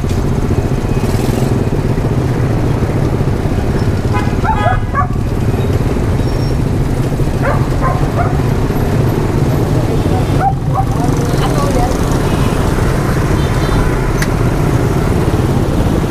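Small salvaged motorbike engine of a homemade scrap-built mini car running steadily as the car drives slowly, mixed with the engines of passing motorbike traffic. Brief faint voices come in a few times.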